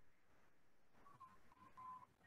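Near silence: faint room tone, with a faint, broken beep-like tone starting about a second in.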